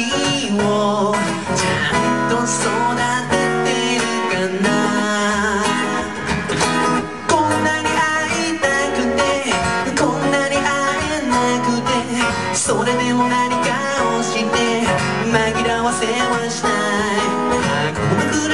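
Acoustic guitar played live in a song, with picked notes and strums, making up a busy, continuous passage.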